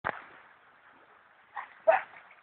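A dog barking: one short bark at the start, then two quick barks near the end.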